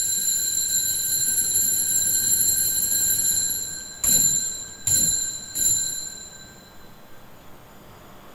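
Altar bell ringing at the elevation of the chalice during the consecration. A high, steady ring hangs on, then the bell is struck three times in quick succession about four to six seconds in, and the ringing fades away.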